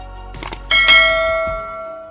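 Subscribe-button animation sound effects: two quick mouse clicks about half a second in, then a bell notification chime struck once, its several tones ringing and fading out over about a second and a half.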